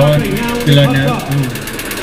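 A man speaking into a microphone, amplified through a public-address loudspeaker. His voice comes through harsh, with a fine rapid buzz over it.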